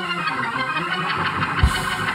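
Organ playing sustained chords, with a single low thump near the end.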